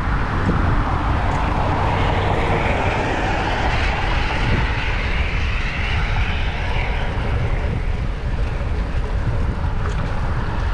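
Wind buffeting a chest-mounted action-camera microphone on a moving bicycle, a steady rumble, with a passing motor vehicle swelling and fading from about two seconds in to about seven.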